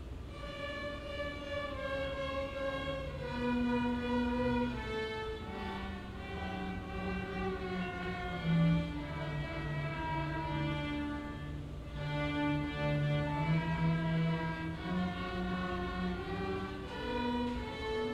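Amateur string ensemble of violins, cellos and double basses playing a piece, starting together right at the outset, with a bowed melody over sustained low notes.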